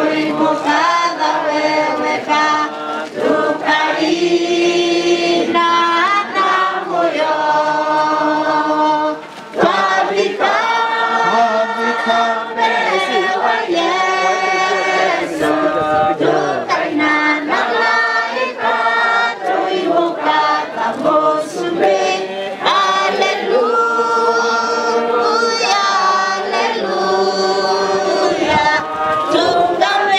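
A choir singing together, several voices in sustained melodic lines, with a brief pause about nine seconds in.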